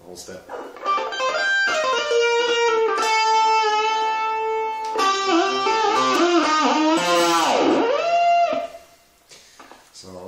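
Electric guitar with a locking tremolo played through a Marshall Reverb 12 transistor combo amp: a lead phrase of held and bent notes starting about a second in. Near the end a tremolo-arm dive swoops the pitch down and back up, then the playing stops.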